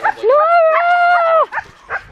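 Siberian husky giving one long, high whining call lasting over a second, which rises at the start and drops off at the end, followed by a couple of short yips near the end.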